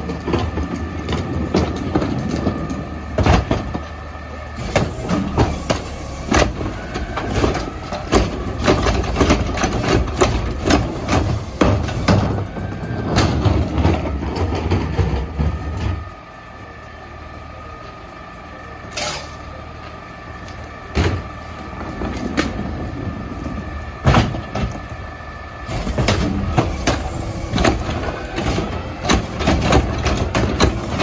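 CNG-powered Mack LEU garbage truck running at the curb, with a steady hydraulic whine and repeated knocks and clunks as refuse is loaded into its front carry can. The engine rumble eases off about halfway through, then rises again near the end as the carry can's tipper lifts a cart.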